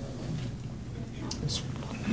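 Quiet room tone with a low steady hum, and a short "yes, sir" spoken quietly about one and a half seconds in.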